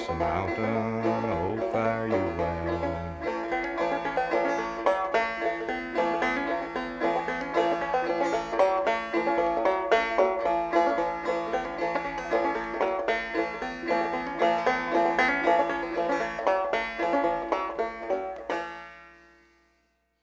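Banjo picking the instrumental ending of an old-time Appalachian song: a quick, steady run of plucked notes. The strings stop about three-quarters of a second before the end and the last notes ring away to silence.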